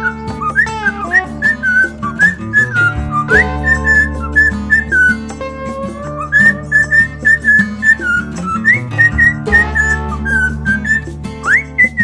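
Cockatiel whistling a tune: a long run of short, high whistled notes with quick upward slides between some of them, over steady background music.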